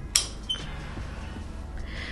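Two snips of scissors cutting hoya stems, the first sharper and louder, the second about a third of a second later.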